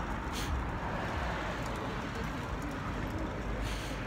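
Steady city street background noise: road traffic running in the distance, with no distinct event standing out.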